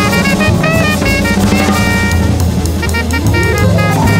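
Jazz band playing a fast bebop tune: a drum kit with busy cymbal work, a moving bass line, and melody lines from the saxophone and keyboard.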